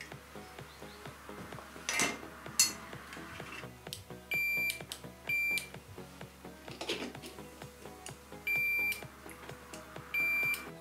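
Digital multimeter's continuity beeper sounding three short, single-pitch high beeps, as its probes are touched across the contacts of a limit switch. Faint background music and a few sharp handling knocks lie beneath.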